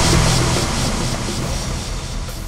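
A low, droning rumble with a hiss over it, fading out steadily: a dark ambient transition effect.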